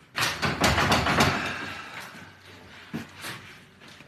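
A glass shop door being yanked and banged: a quick run of knocks and rattles in the first second or so, then a few fainter knocks near three seconds in.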